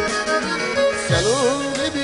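Instrumental break in a Turkish folk song. A kemençe, a small bowed fiddle, plays a wavering, ornamented melody that enters about a second in, over held accompanying tones and low drum hits about a second apart.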